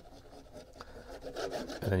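Nozzle of a squeeze bottle of craft glue dragging along the edge of a cardstock box as glue is squeezed out, a quiet rubbing and scraping.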